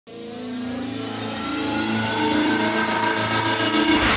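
Rising intro sound effect that swells steadily louder over four seconds, its layered tones slowly climbing in pitch, like an engine revving up.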